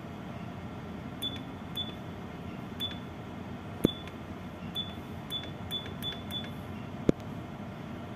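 Keys on a Furuno ECDIS keyboard pressed one at a time as a name is typed, each press giving a short high beep with a click, about nine in all at an uneven pace. Two louder dull knocks come about four and seven seconds in, over a steady background hum.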